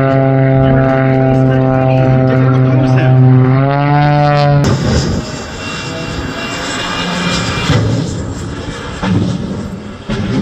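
A low-flying aerobatic propeller plane's engine drones steadily, then rises in pitch just before four seconds in. About halfway through it cuts off abruptly to the steady rushing roar of a jet-powered car's engine.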